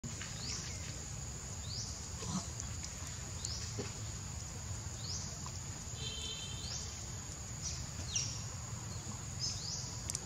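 Steady high-pitched drone of insects, with short, high, upward-sweeping chirps repeating roughly every second and a low rumble underneath.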